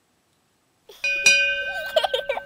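Silence for about a second, then a single bell-like chime is struck and rings on in several steady, clear tones, the outro sting of the end card.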